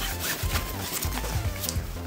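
Nylon backpack fabric rustling and rubbing as a stainless steel water bottle is pushed down into a stretchy inner bottle pocket, with a few small scrapes, over background music.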